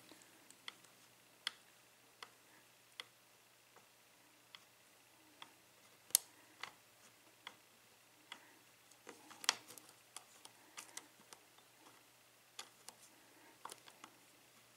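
EVVA euro cylinder being single-pin picked with a hook pick and tension wrench: faint, irregular metallic clicks and ticks as the pick works the pin stacks in the keyway, the loudest about six seconds in and just after nine seconds.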